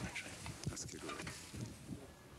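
A man's voice speaking a few short words, not in English, with faint animal sounds in the background.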